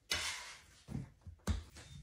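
Hands kneading a small ball of yeast dough on a wooden board: a brief rubbing rustle, then softer handling and a single knock about one and a half seconds in.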